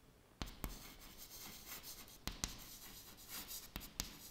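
Chalk writing on a chalkboard: faint scratching strokes broken by sharp taps of the chalk against the board, starting about half a second in.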